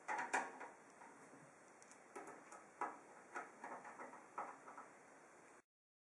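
Phillips screwdriver turning a screw into a PC case's metal back panel to fasten the power supply: a string of faint, irregular clicks and scrapes, metal on metal. It cuts off to silence about five and a half seconds in.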